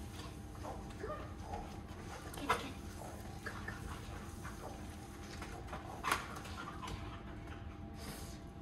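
A dog and a person moving about in play: scattered soft footfalls and scuffling, with two sharper taps about two and a half and six seconds in.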